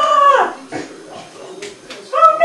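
A high-pitched, wordless squealing voice, held and then gliding down until it stops about half a second in. After it comes a quieter stretch with a few faint clicks.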